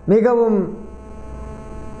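A man's voice says a short phrase, then stops, and a steady electrical mains hum carries on through the pause.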